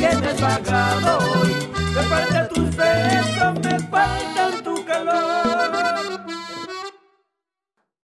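Live cumbia band playing an instrumental passage: accordion melody over electric bass and timbales. The bass drops out about halfway, the accordion carries on alone, and the sound cuts off about a second before the end.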